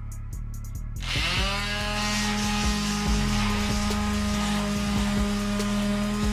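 Electric detail sander switching on about a second in, spinning up and then running at a steady hum while smoothing a papier-mâché surface.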